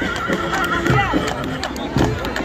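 A horse whinnying, a wavering high call followed by a falling one, over the clip-clop of hooves on asphalt.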